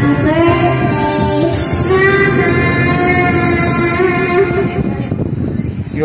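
Karaoke backing music with a young girl singing through a microphone in long held notes.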